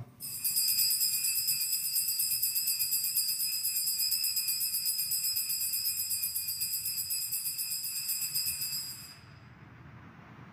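Altar bells (sanctus bells) rung in a rapid, continuous shake at the elevation of the consecrated host, stopping about nine seconds in.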